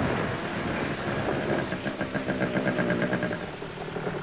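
Motorcycle engine running at low revs through the hiss of heavy rain. The rain is loudest at first and eases off as the engine settles.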